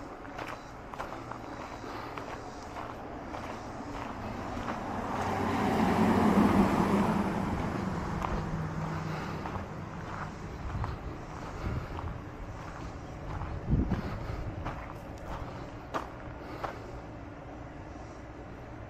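A car passing along the street, its noise swelling to a peak about six seconds in and then fading away, with light footsteps throughout.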